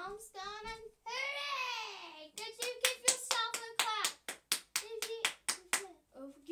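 A young girl singing a children's song, then a quick run of claps, about five a second, with short sung syllables between them.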